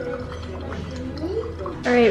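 Orange juice running from a buffet juice dispenser's tap into a champagne glass, over background music.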